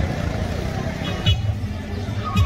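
Busy street ambience: a steady low rumble of traffic with indistinct voices of passers-by.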